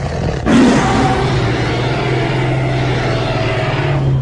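Big cat snarling roar sound effect for the attacking panthers: one long, rough call, getting louder about half a second in.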